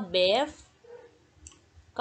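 A woman's voice saying the English word "brave", then a short pause broken by a faint click about a second and a half in.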